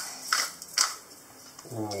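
Hand pepper mill grinding black peppercorns as it is twisted: two short gritty crunches about half a second apart.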